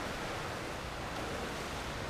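Steady, even hiss of an indoor pool hall's background noise, with no distinct events.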